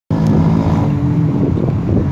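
Engine of a moving road vehicle: a steady hum of several pitches that fades after about a second and a half, over loud, continuous rushing noise.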